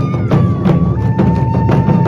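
Taiko ensemble drumming: several wadaiko struck together in a fast, steady beat of about four heavy strokes a second. A high held tone sounds over the drums and steps down in pitch about halfway through.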